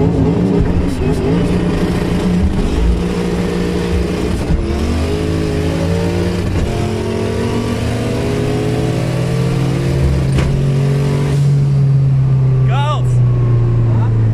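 Turbocharged V8 of a tuned Audi 80 B3 quattro at full throttle, heard from inside the cabin, pulling hard through the gears. There are short breaks at the upshifts in the first several seconds, then one long pull whose pitch climbs slowly as the car reaches high speed.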